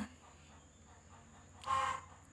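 A pause between sung phrases of a woman's Red Dao folk song: her held note stops right at the start, then near silence with one short, faint sound about three-quarters of the way through.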